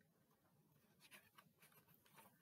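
Near silence, with a faint rustle of a picture-book page being turned in the second half.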